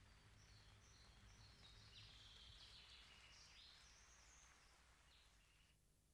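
Near silence: faint outdoor background noise with small birds chirping, slowly fading toward the end.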